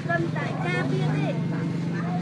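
A woman talking over a steady low engine hum, like a vehicle running close by.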